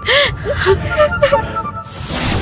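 A person sobbing, with gasping breaths and short whimpers, over soft background music with a held tone.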